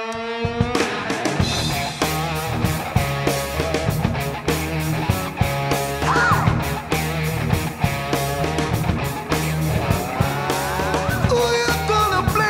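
Rock band's studio demo take: distorted electric guitar, bass and drum kit playing a driving rock riff at a steady beat. A held note gives way to the full band coming in together under a second in.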